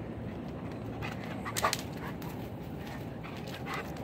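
A dog vocalizing: one short, loud sound about a second and a half in and a fainter one near the end, over a steady background hiss.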